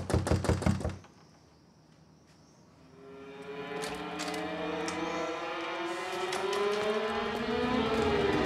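A quick run of about seven knocks on a wooden door in the first second. Then, after a short hush, music swells in from about three seconds in, its tones slowly rising and growing louder.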